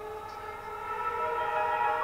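Large Paiste gong ringing with a dense cluster of sustained, shimmering tones that grows louder about a second in.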